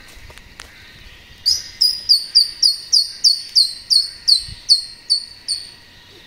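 A bird calling close by: a rapid series of about fourteen short, high, downward-slurred whistled notes, roughly three a second, starting about a second and a half in and stopping near the end.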